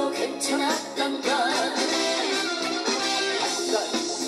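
Male singer singing a Korean popular song through a handheld microphone over an amplified musical backing, his voice wavering with vibrato on held notes.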